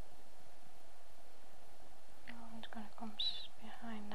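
Steady background hiss, then a woman begins speaking softly about two seconds in.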